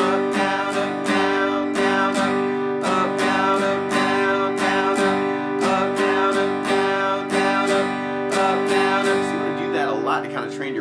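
Steel-string acoustic guitar strumming a G major chord over and over in a down, down-up, up, down-up strum pattern, in a steady, even rhythm with no chord change.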